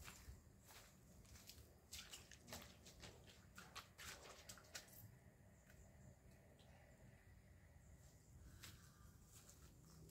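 Near silence: faint outdoor background with a few soft, scattered clicks, most of them in the first half.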